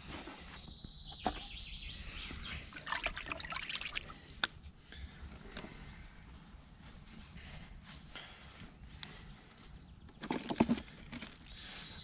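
Faint handling noises with a few light clicks: hands working damp groundbait in a plastic bucket, then rummaging in a bucket for a mesh riddle.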